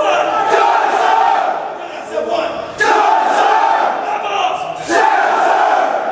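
Platoon of Marine recruits shouting in unison: three loud, drawn-out group shouts about two and a half seconds apart.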